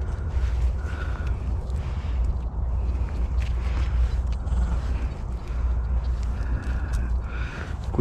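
Clumps of soil being broken apart and rubbed between gloved hands, giving scattered small crumbling clicks and rustles over a steady low rumble.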